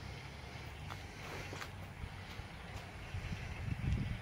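Wind buffeting the microphone: a low, irregular rumble that gusts stronger near the end, with a few faint clicks.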